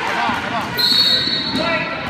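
Gym game sounds with spectators' and players' voices, and a referee's whistle blown once, held for about a second in the middle.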